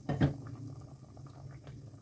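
Chicken shorba curry simmering in an open clay handi (earthenware pot), its surface bubbling with faint scattered pops. There is a brief louder sound just at the start.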